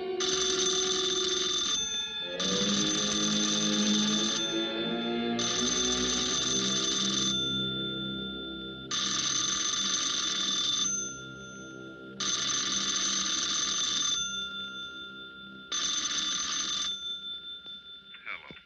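Wall telephone's bell ringing six times, each ring about two seconds long with short gaps, over an orchestral film score. The ringing stops shortly before the receiver is taken up.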